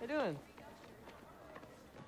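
A brief voiced exclamation right at the start, then near silence with only faint low background sound for the rest.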